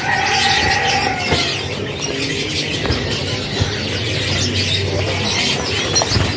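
A cage full of domestic canaries chirping and trilling together in full song, a dense overlapping tangle of quick high notes, with wings fluttering now and then.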